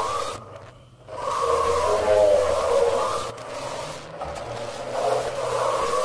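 Warbling, wavering voice-like electronic sound coming in swells of about a second, with a brief break about half a second in, from a glowing screen said to be unplugged.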